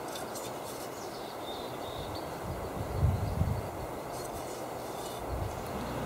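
Steady outdoor background noise with a low rumble that swells for about a second, about three seconds in.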